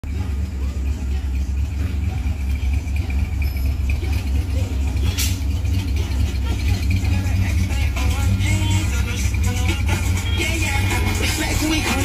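1964 Chevrolet Impala SS engine idling steadily at low pitch, with music playing over it and singing coming in about two-thirds of the way through.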